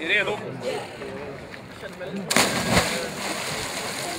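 A person jumping off a boat into a lake and hitting the water with a loud splash about two and a half seconds in, the splashing water dying away over the next second.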